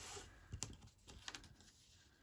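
Faint handling of card stock: a soft paper rustle at the start, then a few light taps and clicks as the panel is lifted and laid back down.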